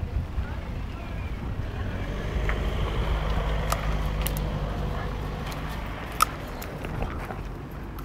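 Low rumble of a motor vehicle's engine, a steady hum that swells in the middle and fades toward the end, with a few faint clicks.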